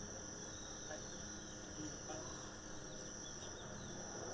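Steady, high-pitched insect chorus over a low, even rumble.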